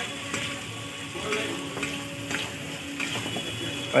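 Quail meat curry sizzling in a metal frying pan, with a spatula scraping through it in short strokes about once a second.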